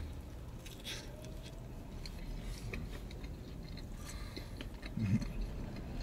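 A person chewing a mouthful of Detroit-style pizza, with faint wet clicks and crackles of the bite. A short hum of voice about five seconds in.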